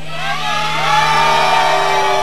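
A large crowd cheering and whooping, many voices shouting at once, swelling about half a second in, over a steady low hum.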